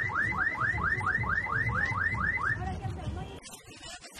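Car alarm siren sounding a repeated rising whoop, about four sweeps a second, that stops about two and a half seconds in.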